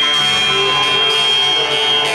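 Jaw harp (vargan) played into a microphone over a band: a steady buzzing drone with one bright high overtone held throughout.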